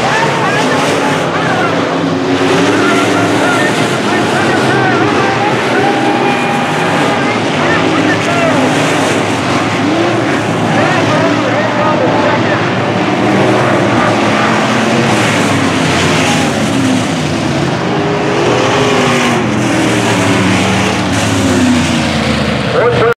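Several IMCA sport modified race cars with V8 engines racing laps around a dirt oval. The engines rise and fall in pitch as the cars come through the turns and down the straights.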